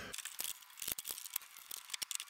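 Faint, irregular small clicks and rustles, handling noise from someone moving about just out of view.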